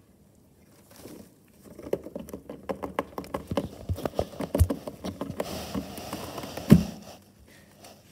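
Rabbit rooting through dry hay: dense crackling and rustling of the straw with quick crunches, starting about two seconds in. One louder thump comes near the end.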